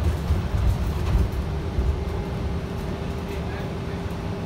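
Cabin noise inside a moving Gillig Low Floor Plus CNG city bus: a steady low rumble from its natural-gas engine and the road, with a thin steady whine above it.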